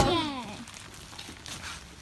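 A voice trails off with a falling pitch in the first half-second, then only low background noise remains.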